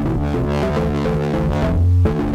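A bass line played through Ableton's Roar distortion, with noise-injection saturation and a very short feedback delay ringing in tune with one of the riff's notes, while the delay line's filter frequency is turned up. A low note swells loudest near the end.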